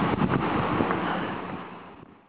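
Wind rushing over the camera's microphone outdoors, with a few faint knocks in the first half second, fading away near the end.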